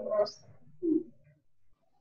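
A person's quiet speech trailing off in the first half-second, then one short low hum about a second in.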